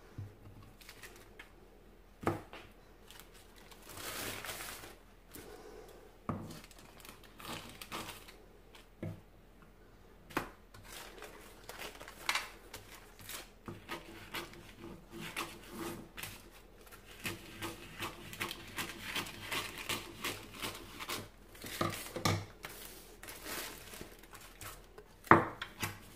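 Paper and a plastic bag rustling and crinkling as frozen patties are wrapped by hand, with scissors snipping paper and scattered light knocks of handling on the tray and table.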